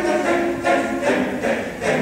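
Large choir of boys and adult voices singing a cappella in held chords, with new syllables coming in about halfway through and again near the end.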